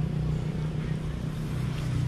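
A steady low engine hum that runs on unchanged.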